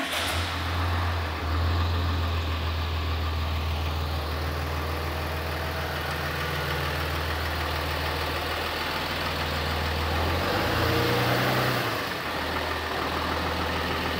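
Ram 3500 dually pickup's engine starting right up and settling into a smooth, steady idle. About ten seconds in, the idle briefly rises a little, then settles back.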